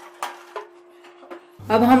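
Metal cupcake baking tray clinking and knocking against the oven rack as it is slid into a countertop electric oven and the door is shut, over a steady hum.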